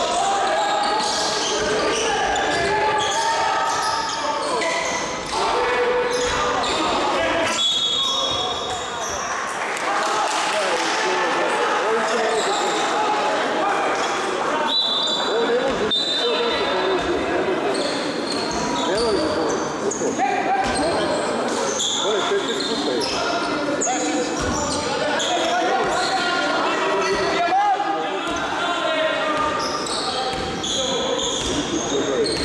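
Basketball game sound in a large hall: a basketball bouncing on the hardwood court amid steady talk and shouts from players, coaches and spectators. Two short high squeals stand out about 8 and 15 seconds in.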